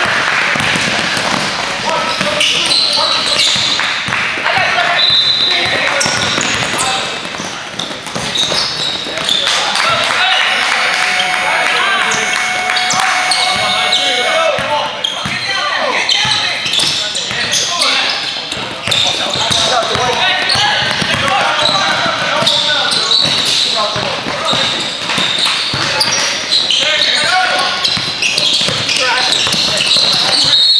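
Basketball game on a hardwood gym court: the ball dribbled in quick bounces, sneakers squeaking in short high squeals, and players and bench calling out in the background.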